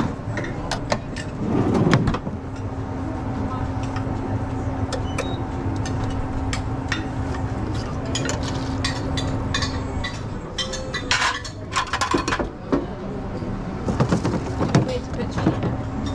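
Metal tongs and a stainless steel pan clinking and clattering, with a denser run of clatter about eleven seconds in. A steady hum runs under it and stops about ten seconds in, and voices are heard in the background.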